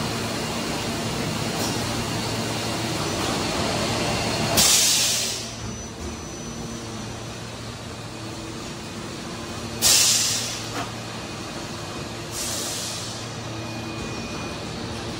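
A 48-cavity PET preform injection moulding machine running with a steady hum. Over the hum come sudden bursts of compressed-air hiss: a loud one about a third of the way in, another about two-thirds in, and a weaker one near the end.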